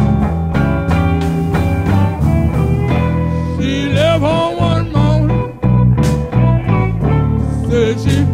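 Electric Chicago blues band playing: electric guitar, electric bass and drums, with a bending, wavering lead line coming in a little before halfway, from the amplified harmonica or the singer.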